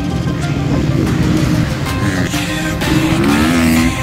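Dirt bike engines revving as the bikes take jumps, climbing in pitch in the second half, mixed with background music.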